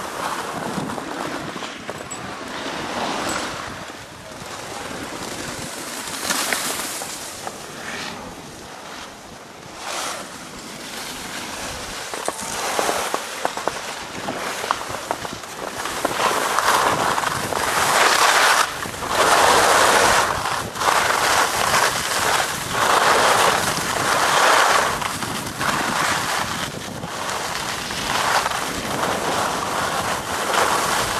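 Wind rushing over the microphone of a camera carried by a downhill skier, together with the hiss and scrape of skis on packed snow. It is softer at first, then grows louder in rough surges about halfway through as speed picks up.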